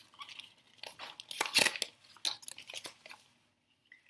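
A thin plastic wrapper and a folded paper leaflet crinkling and rustling in the hands as a small toy is unwrapped and the leaflet unfolded. The rustles come in irregular bursts, loudest about a second and a half in, and die away near the end.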